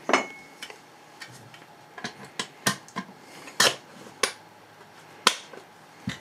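Metal parts of a 1932 Rolleiflex Old Standard twin-lens reflex camera being handled: about nine sharp, irregular clicks and knocks as the empty film spool is set into the top of the camera and the detached back is handled.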